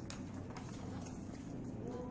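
Low steady background hum of room tone, with no distinct events.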